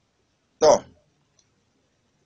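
A man's voice gives one short, abrupt syllable about half a second in, falling in pitch; the rest is silence.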